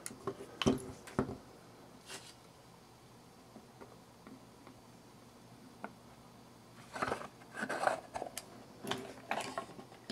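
Handling noises of a metal snap-hook clasp and leather strap being fitted to the case: a few sharp clicks near the start, a quiet stretch, then a cluster of clicks and rustling in the last three seconds.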